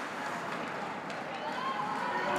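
Ice rink game ambience: skates scraping and carving on the ice during play, with spectators' voices in the arena over it, growing a little clearer near the end.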